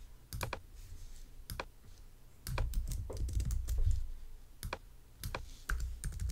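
Typing on a computer keyboard: irregular key clicks, with a denser run of keystrokes and a dull low thudding under them partway through.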